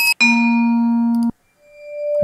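Sample previews of vibraphone notes from Ableton's orchestral sound library. A steady, ringing note cuts off abruptly about a second and a quarter in. A softer, bowed-sounding note then swells in near the end.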